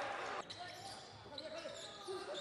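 Faint sound of a basketball game in a hall: a ball bouncing on the court, with distant voices from players and crowd.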